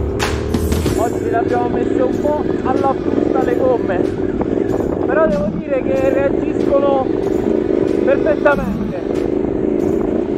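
Motorcycle engine running steadily while riding, with a voice over it; background rock music ends about a second in.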